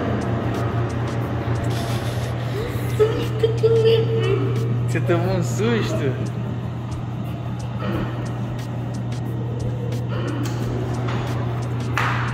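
A steady low hum, with indistinct voices in the background.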